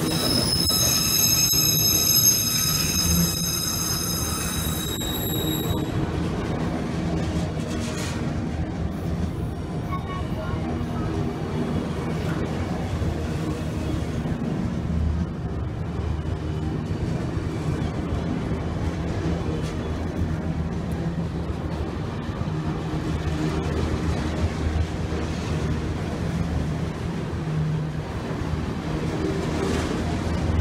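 Freight train of multilevel autorack cars rolling past close by, a steady rumble and rattle of wheels on rail. For about the first six seconds a high-pitched, multi-toned wheel squeal rings over it, then dies away, leaving the even rumble of the passing cars.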